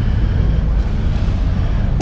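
Steady low rumble of background noise in a large indoor exhibition hall, with no distinct event standing out.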